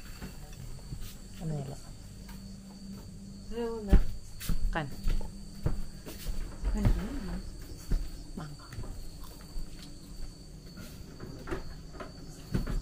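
A steady, high-pitched drone of night insects in the background, with a low steady hum under it, a few brief voices, and a sharp thump about four seconds in.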